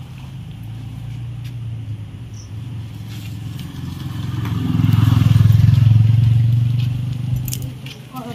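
A motor vehicle's engine running with a steady low hum, growing louder as it passes close by about five to six seconds in, then fading away.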